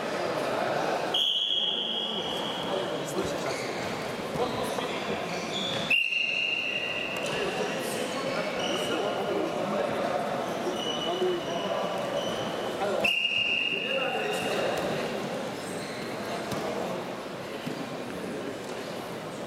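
A wrestling referee's whistle sounding three times, steady high blasts of about a second each, about a second in, about six seconds in and about thirteen seconds in, over the constant chatter and calls of a sports hall.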